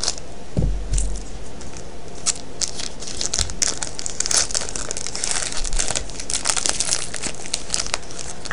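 Foil card-pack wrapper being cut with scissors and pulled open by hand, crinkling and tearing throughout.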